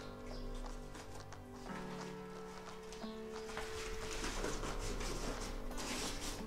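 Soft background music, with dry corn husks rustling as hands lay them over tamales in a steamer pot and press them down, the rustling thicker in the second half.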